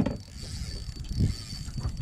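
Fishing reel being cranked, a soft mechanical winding sound, as a squid jig is worked.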